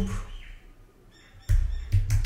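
Computer keyboard keys being typed, a quick run of clicks over dull desk thuds starting about one and a half seconds in.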